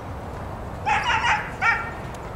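A dog barking: a quick run of three high barks about a second in, then one more.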